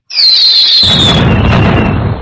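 Edited-in comedy sound effect: a high whistle falling in pitch for most of a second, then a loud explosion that rumbles for over a second.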